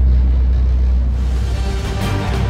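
A motor yacht's engines give a low, steady drone while underway. Background music comes in about a second in and takes over.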